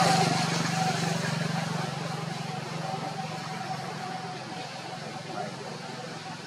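A motor vehicle's engine running with a steady hum, fading as it moves away, over faint background voices.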